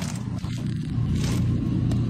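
A steady low background rumble with a faint click near the end.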